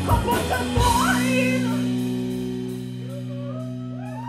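Live rock band, with drum kit and electric guitar, hitting a final beat about a second in, then letting a held chord ring out and slowly fade.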